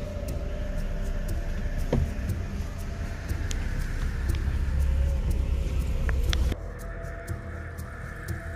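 Car driving slowly along a dirt track, a steady low engine and tyre rumble heard from inside the cabin with the driver's window open. About six and a half seconds in, the outside noise drops suddenly and the rumble quietens.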